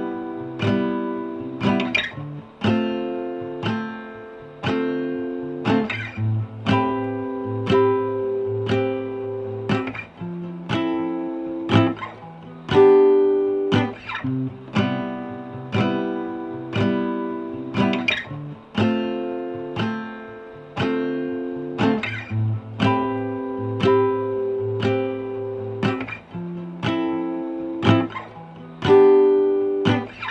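Acoustic guitar strumming chords in a steady rhythm. Each strum rings out before the next.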